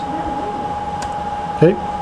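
Steady room background noise, like a fan or air conditioner running, with a constant high-pitched whine and a faint click about a second in.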